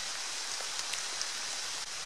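Steady light rain falling on woodland, an even patter with a few faint separate drop ticks.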